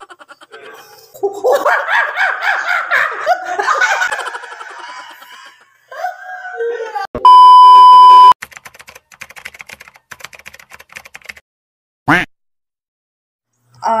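Laughter and voices, then a loud, steady, high-pitched test-tone beep lasting about a second, the kind played over TV colour bars, edited in.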